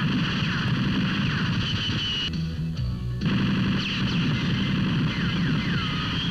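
Film soundtrack of a shootout: rapid, continuous gunfire mixed with music, the higher part of the sound cutting out briefly about halfway through.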